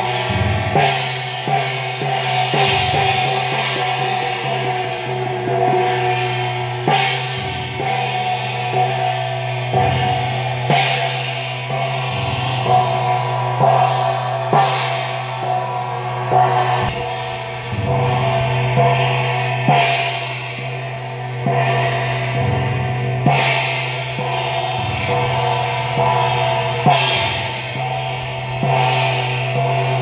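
Chinese temple percussion music: gongs, cymbals and drums struck about once a second or so, over steady sustained tones.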